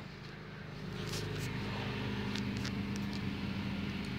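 A steady low mechanical hum, like a motor or engine running, with a few faint clicks.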